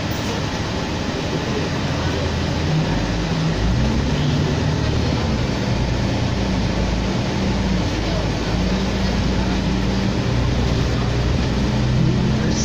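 Inside a 2004 New Flyer D40LF diesel city bus under way: steady engine and road noise. The engine's low drone comes in louder about three seconds in and holds, its pitch shifting slightly.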